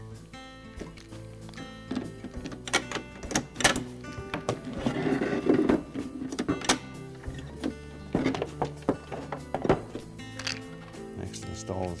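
Background music over the clicks and knocks of the plastic ice bin, auger housing and metal spring clip being handled and set down, with a denser clatter about five seconds in.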